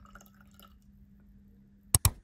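Wine pouring into a stemmed glass: faint trickling and small drips. Near the end, two sharp clicks in quick succession are the loudest sound.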